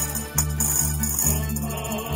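An estudiantina, a Spanish-style student tuna, sings together to strummed guitars and mandolin-type instruments, with a pandero (tambourine) jingling in rhythm.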